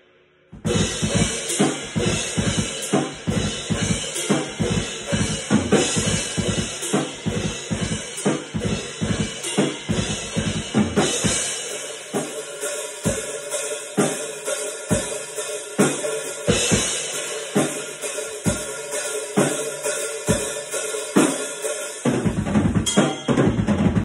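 Meinl Classics Custom Dark cymbals and a Tama drum kit played in a steady rock beat, starting about half a second in: kick drum and snare hits under a constant wash of crash and ride cymbals. Recorded through a phone's microphone, which the drummer says does not do them justice.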